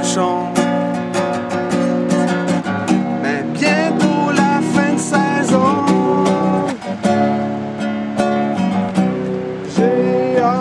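Music: an acoustic guitar strummed in a steady rhythm.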